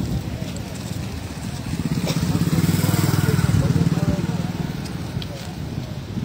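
Small motorcycle engine passing close by, growing louder for a couple of seconds and then fading as it goes past.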